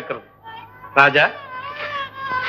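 A single short, high-pitched cry about a second in, falling in pitch. Sustained background film music then comes in.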